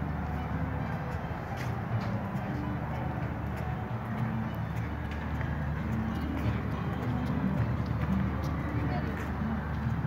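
Indistinct background chatter of people, over a steady low hum.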